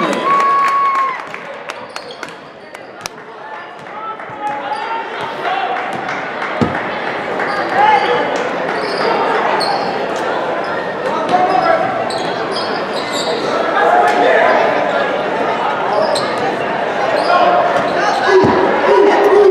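Basketball game in a large, echoing gym: a ball bouncing on the hardwood court in short sharp knocks, over constant voices shouting and talking in the hall. The voices are quieter between about one and four seconds in and grow busier toward the end.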